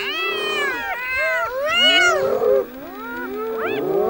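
Several spotted hyenas calling at once, many overlapping rising-and-falling wails and squeals, loudest about two seconds in. These are the excited calls of a hyena clan contesting a kill with lions.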